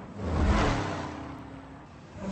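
A car engine rising to a peak about half a second in and then fading away, with a rush of noise over its low drone.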